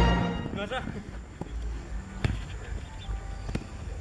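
Three sharp knocks of a football being kicked on artificial turf, about a second apart, over a faint steady background with music in it; a brief voice is heard just under a second in.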